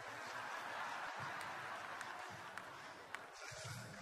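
Congregation laughing together, the laughter swelling in the first second and then easing, with a few sharp claps scattered through it.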